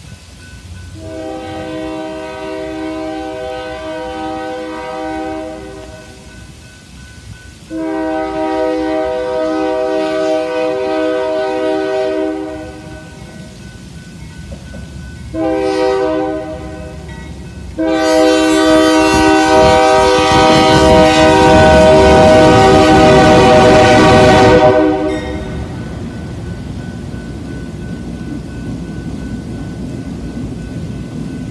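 Union Pacific diesel locomotive's air horn sounding the grade-crossing signal: two long blasts, a short one, then a final long blast, the loudest, as the locomotive reaches the crossing with its engine and wheels rumbling. After the horn stops, the train's cars rumble steadily past.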